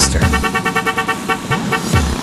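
A vehicle horn sounding a rapid string of pulses, about ten a second, on one steady multi-note chord for most of two seconds.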